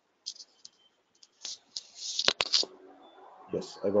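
Short scratchy rustles and two sharp clicks close to a headset microphone, with a man's voice starting near the end.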